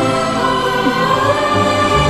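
Background music: a choir singing long, held chords over orchestral accompaniment, in the style of a devotional hymn.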